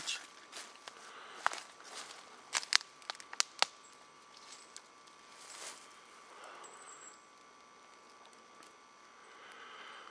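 Footsteps through forest undergrowth, with a run of sharp snaps and cracks in the first four seconds. After that only a faint steady hiss remains.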